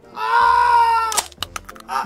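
A man's long, high-pitched cry of pain, lasting about a second, as his leg is wrenched by a bone-setter. It is followed by a few sharp clicks.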